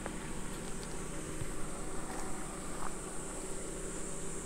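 Steady high-pitched insect drone, with a low steady hum beneath it.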